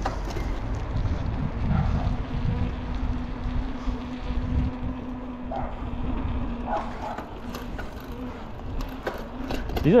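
Street ambience: a vehicle's engine hums low and steady for several seconds, then fades, over a low rumble.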